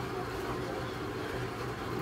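A steady low background hum with no other distinct sound.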